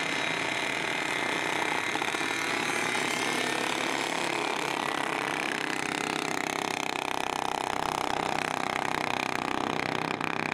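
A pack of small gas motorized-bicycle engines revving hard under racing load, a dense steady buzz, its tone shifting lower about six seconds in.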